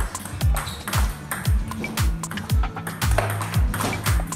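Background music with a deep bass kick that drops in pitch, about two beats a second, over held bass notes. Sharp clicks of table tennis balls being hit and bouncing on the table come through irregularly.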